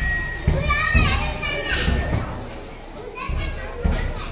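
Children's high-pitched voices calling out and chattering, most strongly in the first half, with a low rumble underneath.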